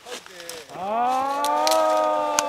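A long moo-like call starts under a second in, scooping up in pitch and then held. A few short, sharp crackles sound behind it.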